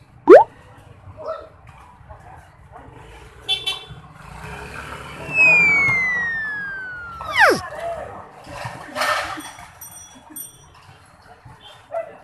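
Cartoon-style whistle sound effects: a quick rising whoop just after the start, then a long descending whistle over about two seconds that ends in a steep plunge, with a short noisy burst a little later. Scattered voices and street-game noise run underneath.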